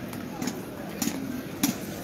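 Footsteps on street paving close to the microphone, one sharp step about every 0.6 s at a walking pace, over the chatter of people nearby.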